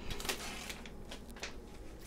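Kitchen scissors snipping open a vacuum-sealed plastic bag of cooked ribs: a few soft clicks of the blades among faint crinkling of the plastic.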